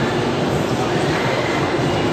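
Steady loud background din with indistinct voices in it.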